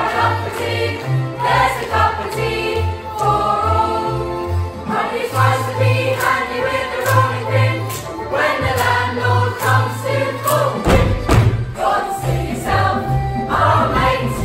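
Children's school choir singing an upbeat song over accompaniment with a pulsing bass line. A few sharp hits come about three-quarters of the way through.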